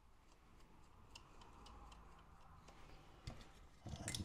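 Near silence with a few faint, scattered clicks and a soft knock a little after three seconds in: small metal parts of a scale tank's suspension arm being handled and seated on the hull.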